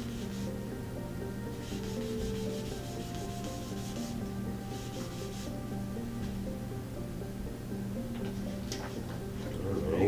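Hand rubbing the glossy paper cover of a comic book to clean off dirt, in several short dry strokes during the first half, over quiet background music.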